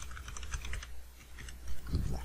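Computer keyboard typing: a quick run of keystrokes as a password is typed in at a terminal prompt.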